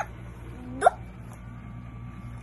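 A girl's single short vocal sound about a second in, a low note that jumps sharply up in pitch, over a steady low room hum.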